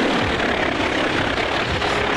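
Loud, steady helicopter noise: rotor and engine sound.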